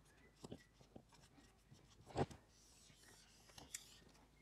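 Felt-tip marker writing on a whiteboard: faint scratches and squeaks of pen strokes, with a few small taps, the loudest about two seconds in.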